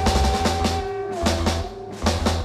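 Live rock band: a drum kit playing a driving beat of bass drum and snare hits with cymbals, under a held note from the band that drops in pitch a little past the middle.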